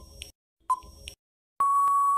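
Quiz countdown timer sound effect: short ticking beeps about once a second, then a long steady beep near the end signalling that time is up.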